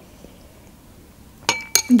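Metal spoon clinking against a ceramic soup bowl as it is set down: two short clinks with a brief ring, about a second and a half in.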